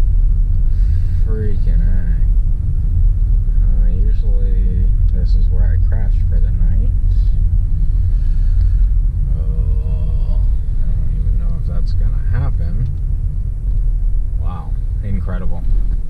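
Steady low rumble of a car driving slowly on a dirt road, heard from inside the cabin.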